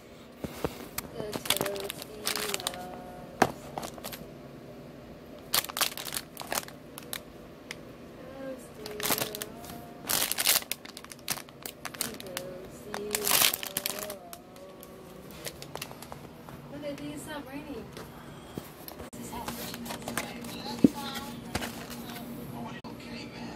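Plastic food packaging crinkling in several separate bursts as it is handled, over faint background voices.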